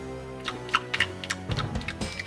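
Background music with a run of quick, irregular crunchy clicks, a mock eating sound as a doll bites into a gummy worm.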